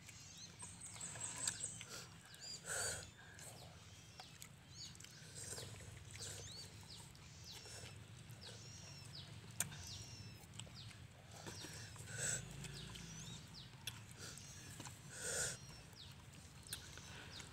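Small birds chirping over and over in short arched calls, with a few louder slurps of instant cup noodles about three seconds in, about twelve seconds in and near the end.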